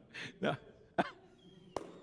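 A few short, breathy coughs and throat sounds in the first second, then a sharp click near the end.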